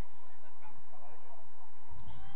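Faint, distant shouts of players calling to each other across an outdoor football pitch, over a steady low rumble.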